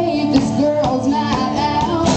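A live band performing: a woman singing the lead melody, backed by acoustic and electric guitars.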